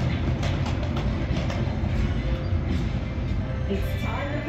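Roulette ball rolling around the track of a spinning automated roulette wheel: a steady rolling rumble with faint clicking.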